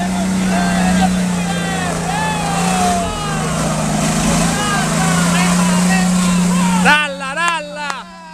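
Off-road 4x4's engine running hard under load as it climbs a steep mud track. Its pitch drops briefly about three seconds in and then rises again. Spectators shout over it throughout, most clearly near the end.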